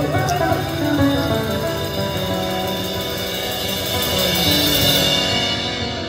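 Live rock band playing an instrumental passage: guitars over a drum kit, heard from within the audience of a concert hall.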